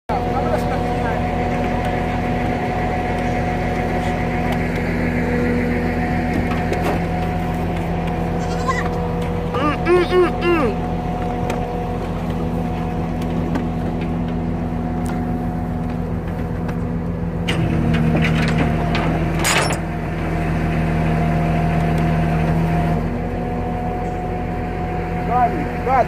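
A goat bleating, one quavering call about ten seconds in, over a vehicle engine idling steadily, with a couple of sharp knocks a little before the twenty-second mark.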